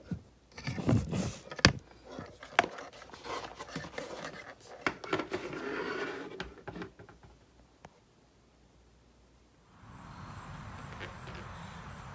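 Handling of a plastic welding helmet: rubbing and scraping with a few sharp clicks and knocks in the first few seconds. After a brief gap of dead silence, a steady faint background hum takes over near the end.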